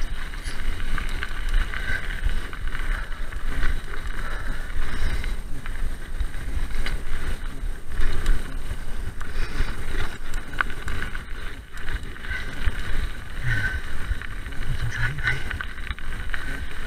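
Mountain bike riding fast over a gravel track: wind buffeting the microphone and a steady rushing tyre rumble, with short knocks and rattles from the bike over bumps.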